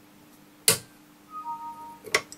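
A single sharp snap, about two-thirds of a second in, as side cutters crack into the plastic case and filling of a small polyester film capacitor held in a vice.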